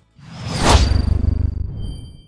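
Logo-reveal whoosh sound effect: a rush that swells to a peak just under a second in over a deep low rumble, then fades out. A thin high ringing tone comes in over it and rings on.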